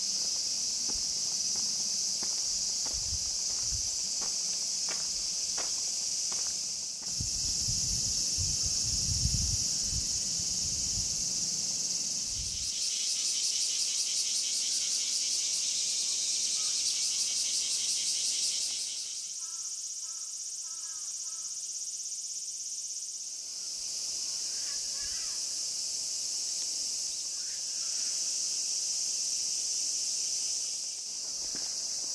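Cicadas in a dense summer chorus: a steady high drone. About halfway through it turns into a fast, even pulsing buzz, and it changes abruptly several times.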